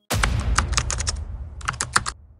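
Keyboard-typing sound effect: a sudden hit fading into a low rumble, then a quick run of about seven keystroke clicks, a short pause, and a second run of clicks near the end.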